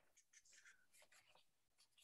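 Near silence, with a few faint scratchy rustles in the first second or so.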